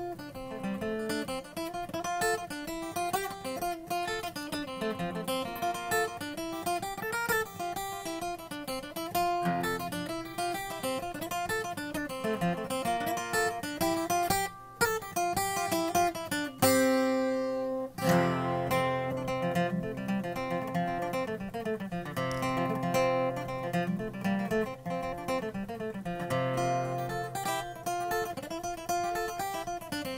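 Irish tenor banjo picking a quick jig melody over a strummed acoustic guitar in DADGAD tuning. The melody breaks briefly about halfway through, followed by a loud strummed chord.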